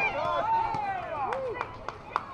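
Spectators shouting and cheering, several voices calling out with long rising and falling pitches, with a few sharp clicks.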